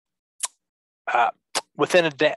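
A man's hesitant speech over an online call: one short, sharp click about half a second in, then a brief 'uh' and the start of a sentence near the end, with dead silence in the gaps.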